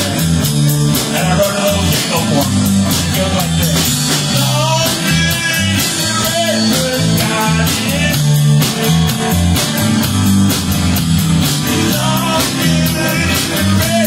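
Rock song with guitar, bass and drums playing a steady beat, with no words sung here.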